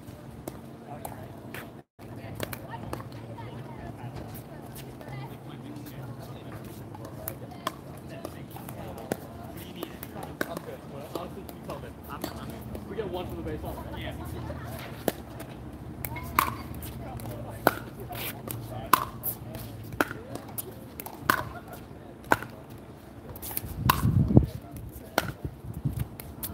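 Pickleball warm-up rally: paddles hitting a hard plastic pickleball back and forth with sharp pops, mixed with the ball bouncing on the hard court. The hits come sparsely at first and then about once a second in the second half. A brief low rumble sounds near the end.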